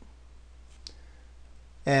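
A single light keystroke on a computer keyboard, the F10 key pressed to start stepping through a program in the debugger, about midway through, over a faint steady low hum.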